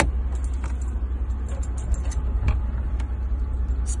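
Steady low rumble with a few light clicks and knocks as a car's rear-cabin storage compartment is opened by hand.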